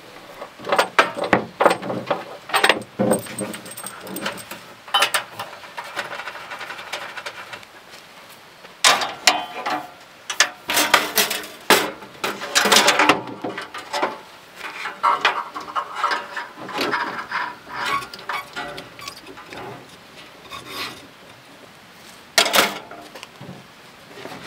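Flat steel camp stove with folding wire legs being handled and set up on a perforated metal fold-down table: repeated clanks, rattles and metal scraping, busiest about halfway through.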